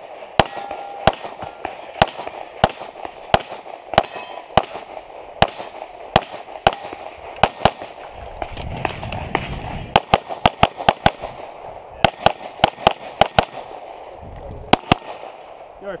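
Rapid pistol fire from a compensated STI 2011 open-division pistol in .38 Super: dozens of sharp shots in quick pairs and strings separated by short breaks, with a fast dense run of shots about two-thirds of the way through.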